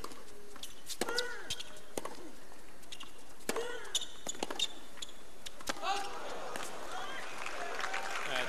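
Tennis rally: a run of sharp racket-on-ball strikes, several of them followed at once by a player's short vocal grunt. About six seconds in, the crowd noise swells as the point ends.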